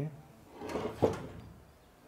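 A short scrape that ends in a knock about a second in, from handling the lobe pump's shaft with circlip pliers just after the external circlip has come off.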